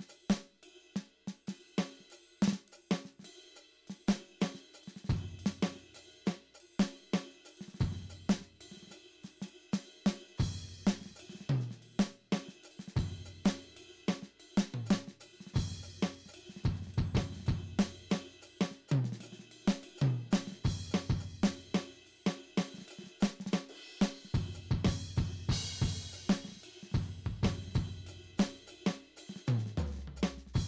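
Simmons SD1250 electronic drum kit played freely with sticks on its 'Blues' drum-set preset: an irregular groove of kick, snare and tom hits under hi-hat and cymbals. There are runs of low tom and kick strokes, and a cymbal crash wash near the end.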